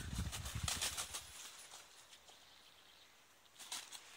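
Crows flapping their wings inside a chicken-wire trap cage, a quick run of soft thumps in the first second and a half, then quieter, with a few sharp clicks near the end.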